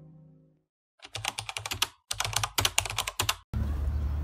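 The tail of guitar music fades out, then a fast run of keyboard-typing clicks comes in two bursts of about a second each. It cuts off sharply about three and a half seconds in, and steady outdoor background noise begins.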